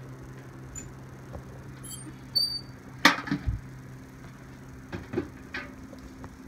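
Metal knocks and clanks as gloved hands reach into a wood stove's firebox and handle its door and a foil turkey pan. The loudest cluster of knocks comes about three seconds in, with a few more near the end, over a steady low hum and a brief high squeak about two seconds in.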